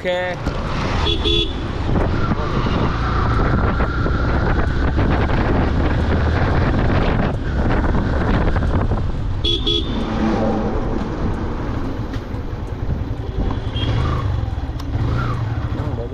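Yamaha motorcycle on the move, its engine and rushing wind noise running steadily, with a short horn toot about a second in and another at about ten seconds.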